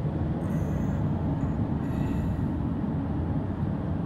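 Steady low rumble of road and engine noise inside the cab of a nearly new Sprinter van cruising at highway speed.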